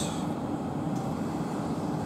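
Siemens Desiro Class 450 electric multiple unit standing at the platform, giving a steady low hum.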